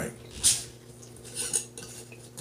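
Metal screw lid being twisted off a large glass mason jar: two short scraping clinks of the lid on the glass, about half a second in and again about a second and a half in.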